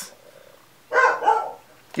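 A dog barks once, briefly, about a second in.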